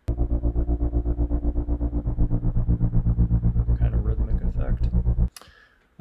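Droning synth pad made from a recorded airplane, pitch-corrected to one steady pitch and chopped into rapid, even pulses by a chopper (tremolo-gate) effect. It cuts off suddenly near the end.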